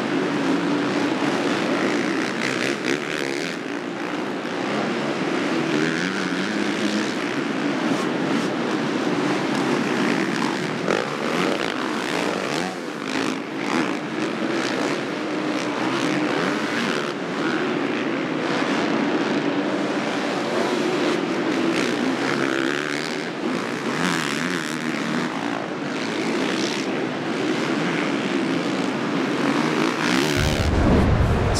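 Several 450-class supercross motorcycles racing, their engines running together as a steady drone whose pitch rises and falls with the throttle.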